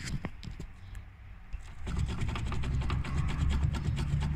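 Fiat Croma steering rack knocking as its tie rod is rocked back and forth by hand: a few loose metallic knocks, then from about two seconds in a faster, louder clatter. It is the sign of heavy play in a badly worn rack, play along the whole rack that the mechanic puts down to the rack slipper.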